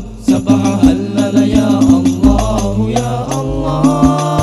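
Al-Banjari ensemble playing: hand-struck frame drums (terbang) beat a quick, interlocking rhythm with a few deep bass strokes, under group chanting of a sholawat.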